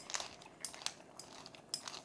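Pepper mill grinding black pepper: a faint, irregular string of crunching clicks.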